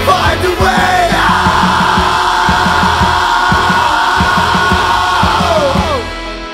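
Emo/math-rock band playing loudly, with pounding drums and electric guitars. Right at the end the drums stop and the guitars are left ringing out as the song closes.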